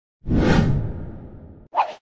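Whoosh transition sound effect on the opening title graphics: it swells in quickly and fades away over about a second and a half. A short second effect follows near the end, with the logo card.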